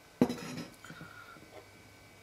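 Large glass jar of vodka set down on a countertop: one sharp glassy knock about a quarter second in, followed by a few faint light clicks.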